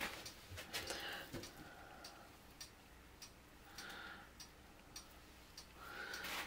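Faint, irregular light clicks and soft rustling from gloved hands handling crumpled paper towels on a plastic-covered work table.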